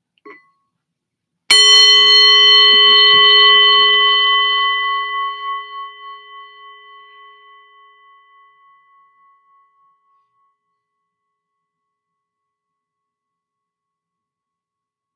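A singing bowl struck once with a wooden striker about a second and a half in, then ringing with several overtones that fade away; the longest-lasting tone wavers slowly as it dies out, about ten seconds in.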